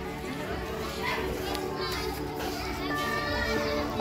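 A crowd of children chattering and calling out, with music playing in the background.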